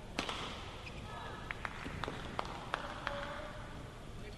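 Badminton rackets striking the shuttlecock in a short rally: about seven sharp cracks over three seconds, with short squeaks of shoes on the court. A murmur of voices in the arena sits underneath.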